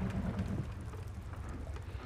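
A steady low rumble under a faint, even hiss: quiet background ambience with no distinct events.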